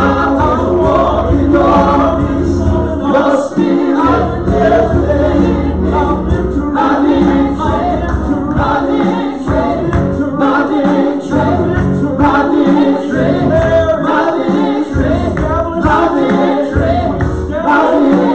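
A live worship band playing a gospel song, with several male and female voices singing together over a stage piano and an acoustic guitar.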